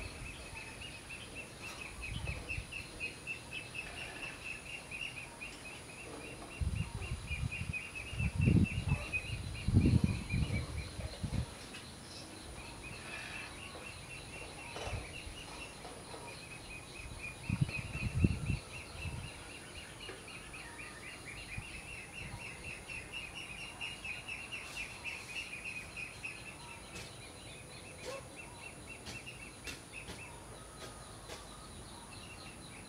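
Outdoor natural ambience: a fast, pulsing high trill keeps repeating with short breaks, over a steady high hiss. Low rumbling bursts come a few seconds in and again about two-thirds of the way through; these are the loudest sounds.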